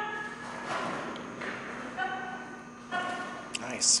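Running footsteps of a handler and a dog's paws on the carpeted floor of an agility course, broken by short called-out cues to the dog.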